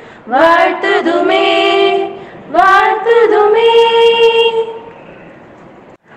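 A female voice singing unaccompanied, heard over a video call: two long phrases of sustained notes, the second trailing off about a second before the end.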